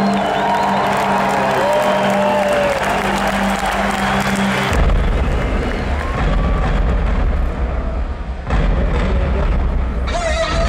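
An arena crowd cheering over a held low keyboard drone. About five seconds in, the drone stops and a deep bass comes in under the crowd noise.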